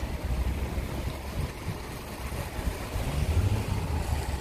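Low, uneven rumble of road traffic mixed with wind buffeting the microphone.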